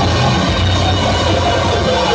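Loud live experimental music played on tabletop electronics: a dense, noisy wall of sound over a sustained low bass tone, with no breaks.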